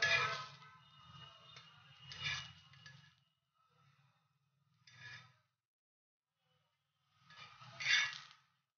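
Spatula scraping and clinking against a flat griddle pan as fried potato patties are lifted off it, in four short strokes a couple of seconds apart, the loudest at the start and near the end.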